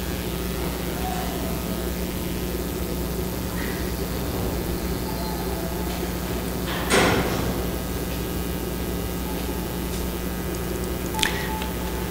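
Steady low room hum in a pause between talk, with one short noise about seven seconds in and a fainter one near the end.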